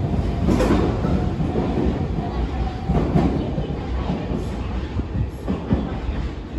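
Electric train running along the platform: a steady low rumble with wheel clatter over the rails, swelling a few times.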